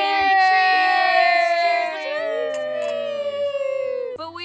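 Several women's voices holding one long sung note together, the pitch sliding slowly downward before they stop near the end.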